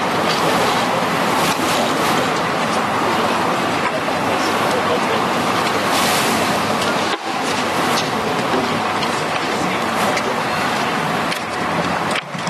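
Loud, steady crowd noise: many voices at once in a dense commotion, briefly dropping out about seven seconds in.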